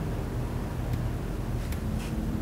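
Used engine oil draining in a thin steady stream from a Porsche 981 Cayman S oil pan into a plastic drain pan below: a faint continuous trickle over a low hum, with two faint ticks about a second apart.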